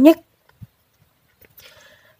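A voice finishes a word at the start, then near silence, broken by a faint short knock about half a second in and a faint hiss-like sound near the end.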